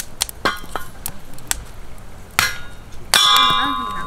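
A steel hammer striking a metal splitting wedge driven into a firewood log: three sharp clanging blows with a high metallic ring, the last the loudest and ringing on.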